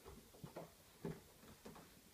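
Near silence, with three faint knocks about half a second apart as a toddler climbs onto and sits down at the top of a plastic toddler slide.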